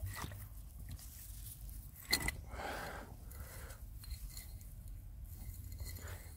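Gloved hands scraping and rustling in loose, wet dump soil around a buried glass bottle, with one sharp knock about two seconds in.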